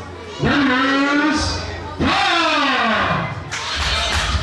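A ring announcer's voice through a microphone in a large hall, stretching a fighter's name into long held syllables that rise and then fall away. Music comes in near the end.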